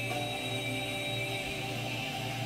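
Accordion playing held, steady chords with no singing.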